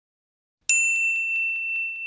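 Silence, then about two-thirds of a second in, a high bell-like ding sound effect starts suddenly and rings on, slowly fading, with faint regular ticks running through it.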